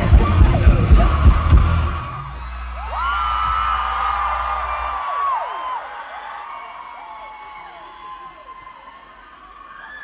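Live rock band with heavy drums and guitar playing the final bars of a song, which stops about two seconds in. A low note rings on for a few seconds while the crowd cheers and whoops, and the cheering then fades away.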